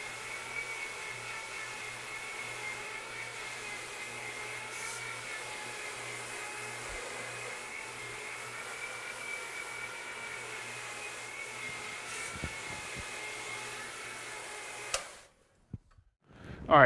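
Single-disc rotary floor machine running steadily, its electric motor giving a constant whine and hum as a bonnet pad scrubs carpet. The sound cuts off abruptly near the end.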